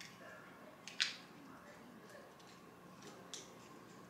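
A sharp click about a second in and a fainter click later, from a phone being pressed into the spring clamp of a selfie-stick tripod's phone holder.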